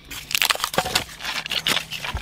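Close, irregular crackling and scraping: a hand rubbing and brushing over the rough concrete underside and dried expanding foam right by the microphone.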